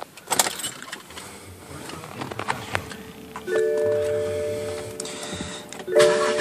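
A few light clicks, then about three and a half seconds in a steady multi-note electronic chime from a BMW 530i's instrument cluster sounds for about two seconds, starting again at the end.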